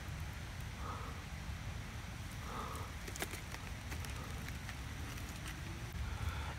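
Low steady rumble of wind on the microphone outdoors, with a few faint clicks and crackles from fingers handling pieces of a polypore mushroom.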